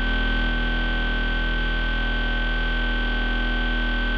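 Early-'90s rave techno: a sustained synthesizer drone with no drums, one held chord of steady tones with a bright high note and a deep bass note underneath.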